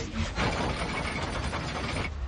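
A warship's heavy anchor chain running out fast, a dense, steady metallic rattle.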